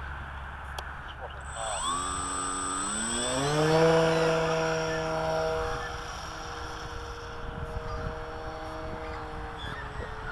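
Electric motor and propeller of a 1.2 m foam RC Tiger Moth biplane throttling up for its takeoff run, a whine rising in pitch about two seconds in. It is loudest around four seconds in, then holds a steady tone and fades as the plane climbs away.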